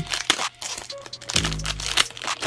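Foil wrapper of a Pokémon TCG booster pack being torn open and crinkled by hand, a run of crackling rips and crinkles, over background music.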